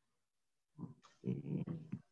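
A woman's short, low muttered voice sounds, including an "okay", over a video call, starting after a second of dead silence.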